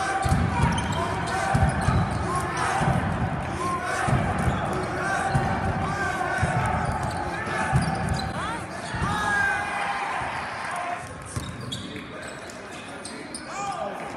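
Basketball being dribbled on a hardwood gym floor, thudding about once a second, with a few short sneaker squeaks about nine seconds in, all echoing in a large gym.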